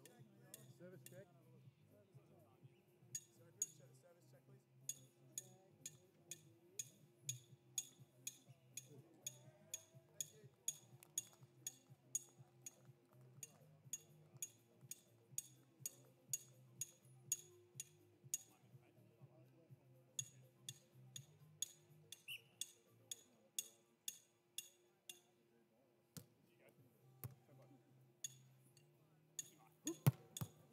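Near silence, with faint, evenly spaced metallic clicks about twice a second that pause now and then, over a low steady hum.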